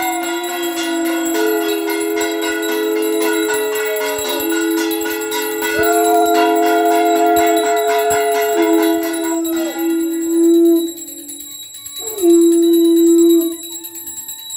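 Conch shells (shankha) blown in long held blasts, two sounding together at slightly different pitches, each note sagging in pitch as it dies away, over a steadily ringing hand bell. The notes break off briefly just after the middle, and a last loud blast comes near the end.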